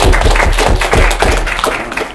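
Audience applauding, loud and close, a dense patter of many hands that starts to die away at the very end.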